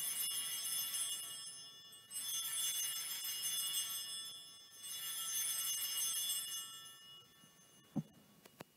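Altar bells rung three times, each ring lasting about two seconds with a bright, shimmering jingle, marking the elevation of the chalice at the consecration.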